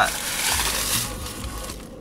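Rustling handling noise as a plastic drink bottle is pulled out and held up, dying down just before the end.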